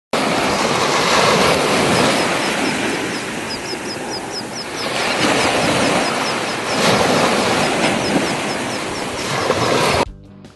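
Surf washing up on a sandy beach, a steady rush that swells and eases as each wave comes in. A string of quick high chirps runs through the middle.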